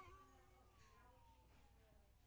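Near silence, with the faint tail of a woman's wailing scream: one thin tone gliding slowly down in pitch as it fades away.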